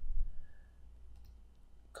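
Computer mouse clicks at a desk: a short low thump just after the start is the loudest sound, followed by a couple of faint clicks a little over a second in.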